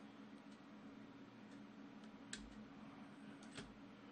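Near silence with a faint steady hum and a few faint computer-mouse clicks, the clearest a little past two seconds in and near the end.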